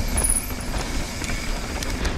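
Mountain bike riding fast down a dirt trail, heard from a camera on the rider: steady wind rumble on the microphone with tyres running over dirt and frequent short clicks and rattles from the bike over small bumps.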